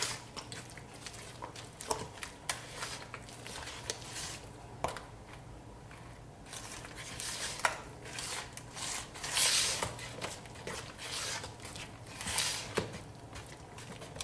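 Spatula stirring buttermilk into thick cake batter by hand in a plastic mixing bowl: irregular wet scraping with light clicks of the spatula against the bowl, a few louder strokes near the end.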